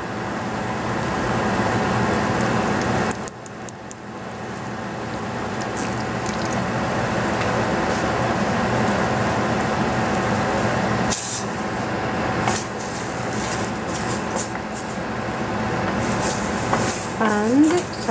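Sliced mushrooms sizzling steadily in a stainless frying pan as soy sauce is poured over them. A few light clicks and knocks come about three seconds in and again around eleven to twelve seconds.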